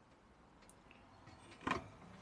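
Faint small clicks, then one sharp plastic knock near the end as the lid of a compressor cool box is opened.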